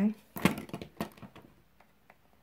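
Small plastic makeup items being handled: one sharp click, then a quick run of small clicks and rattles that dies away.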